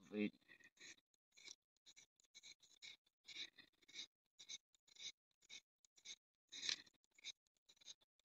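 Knife blade scraping a magnesium fire-starter rod in short, faint strokes, about two a second, shaving magnesium dust onto paper as tinder for lighting a fire.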